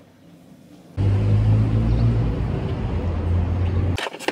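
Low, steady rumble of a car's engine and road noise. It starts abruptly about a second in, after a quiet first second, and cuts off near the end.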